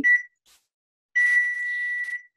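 Microwave oven beeping: a short high beep at the start, then a long steady beep about a second in, the signal that its 30-second heating cycle is done.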